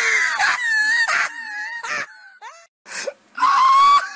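A high-pitched voice wailing in long drawn-out cries: one held for about two seconds, then after a short gap a second steady cry near the end.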